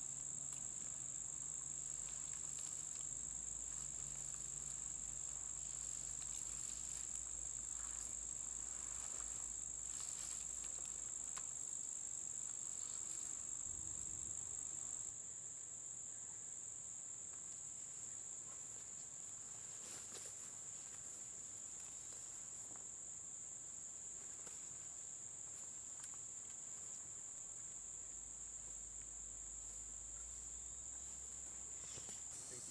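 Steady high-pitched drone of an insect chorus, dropping a little in level about halfway through.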